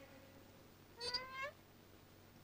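A cat meowing once, a short call rising in pitch about a second in.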